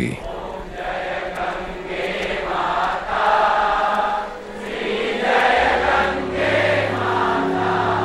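Music: a choir singing long, swelling chant-like phrases, with a low steady drone coming in about halfway through.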